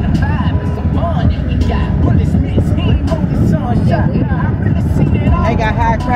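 Car driving, heard from inside the cabin: a steady low road and engine rumble, with a voice over it throughout and stronger near the end.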